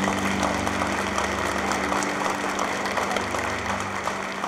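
Audience applauding steadily after a song, with a low steady tone underneath.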